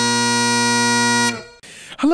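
Highland bagpipes sounding a final held note over their steady drones, which stops abruptly about a second and a half in, followed by a faint hiss.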